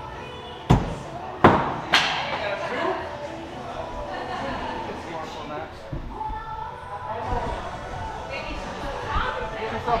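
Three sharp thuds within about a second and a half, from throwing axes striking wooden target boards, followed by people talking in the background.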